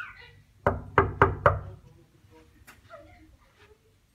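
Four quick knuckle knocks on a hotel room door, starting a little over half a second in and spread over about a second.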